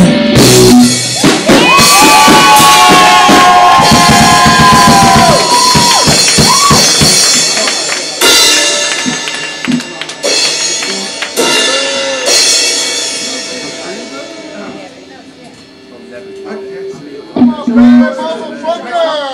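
Rock band playing live, loud at first: drums crash under long held electric guitar notes that ring for a few seconds. A few scattered drum and cymbal hits follow as the sound dies away, like the close of a song.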